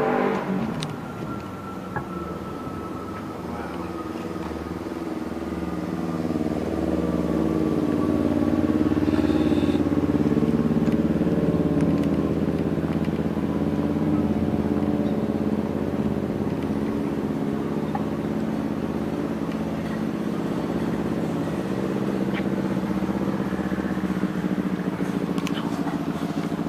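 Street traffic: a motor vehicle's engine running with a steady low hum, growing somewhat louder through the middle stretch.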